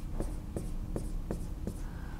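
Marker writing on a whiteboard: a quick run of short strokes and taps as a string of digits is written.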